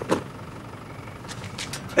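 Car engine idling: a steady low background noise with no clear pitch.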